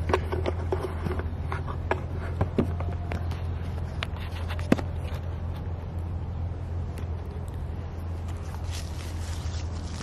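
Camera handling noise as a camera is set down and positioned: scattered scrapes and knocks, the sharpest just before five seconds in, over a steady low hum.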